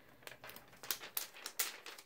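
Clear plastic sticker sheet crinkling in the hands as a sticker is peeled from its backing: a string of faint, irregular crackles.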